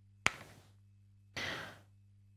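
A paper book page being turned, with a sharp flick about a quarter second in, then a soft half-second intake of breath.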